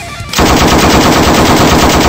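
Rapid automatic machine-gun fire used as a sound effect, a steady fast rattle of shots that starts suddenly about a third of a second in.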